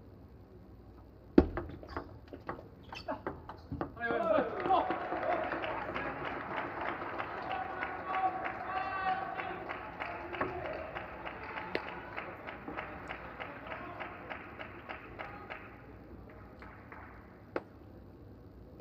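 Table tennis rally: a run of sharp ball-on-bat and ball-on-table clicks over about two and a half seconds, then a shout and crowd cheering with rhythmic clapping as the point is won. The cheering fades away over the last few seconds.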